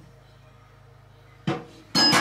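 Quiet room tone, then near the end two sudden clattering knocks of crockery, the second louder and ringing: porcelain coffee cups on saucers being set down on a table.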